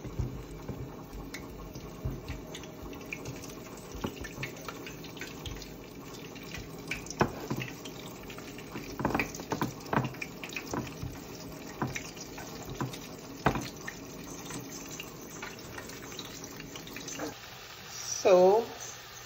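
Egg-and-flour-coated cauliflower florets deep-frying in hot olive oil: a steady sizzle with scattered sharper crackles.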